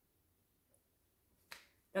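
Near silence, then a single short, sharp click about one and a half seconds in, just before a woman starts to speak.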